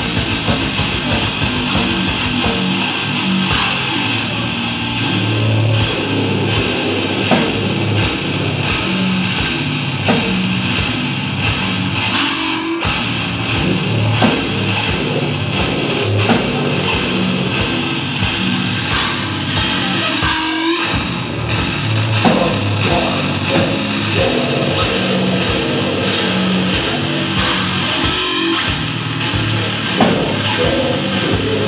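Live technical death metal: a nine-string electric guitar riffing heavily over a drum kit. It opens with a very fast run of kick-drum strokes for the first couple of seconds, then settles into a pulsing, chugging riff with occasional cymbal crashes.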